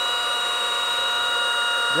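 Rotary paint polisher running steadily at speed, its electric motor giving a high, even whine while the foam pad spins against a glass panel.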